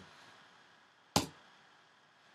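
A single sharp click about a second in, over faint room hiss.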